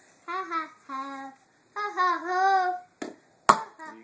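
A child's sing-song voice in three drawn-out notes, then a couple of sharp plastic knocks about three seconds in as a toy plastic bat swings and knocks the ball off a tee-ball stand. The second knock, half a second after the first, is the loudest sound.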